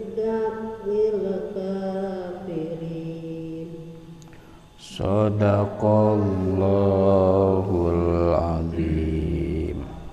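A man reciting the Qur'an in slow, melodic tajwid chant, drawing the vowels out in long held notes. There are two long phrases with a short break about four to five seconds in, and the second phrase is louder.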